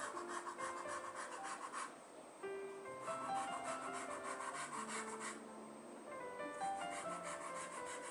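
Pastel pencil scratching across paper in rapid back-and-forth shading strokes. The strokes come in three runs of about two seconds each, with short pauses between.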